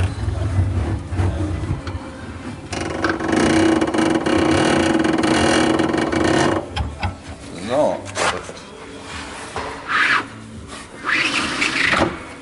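Spare-wheel winch under a Pössl Roadcruiser camper van being cranked by hand with the wheel wrench and handle, lowering the spare wheel. There are a few seconds of steady grinding from the winch in the middle, then knocks and scraping as the wheel comes down onto the floor and is pulled out from under the van.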